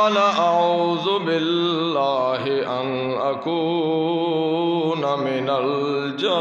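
A man reciting the Quran in the melodic, drawn-out tajwid style of a qari, singing into a microphone in long, wavering, ornamented phrases.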